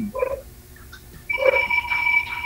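A steady electronic tone sounding two pitches at once. It drops away about a quarter second in and comes back after about a second, with two short murmurs, one near the start and one after the tone returns.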